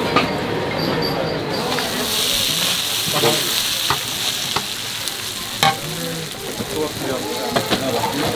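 Chickpeas and corn kernels being stirred and scraped with a metal utensil across a large flat metal tray, with a steady sizzle that sets in about two seconds in. There are sharp clicks of metal on the tray, a loud one about halfway through.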